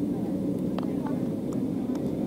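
Steady low hum inside the cabin of an Embraer 195 jet airliner as it taxis, with a few faint clicks.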